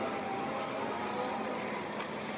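Still RX20-20 48 V electric forklift driving, its drive giving a steady, even running sound with faint whining tones.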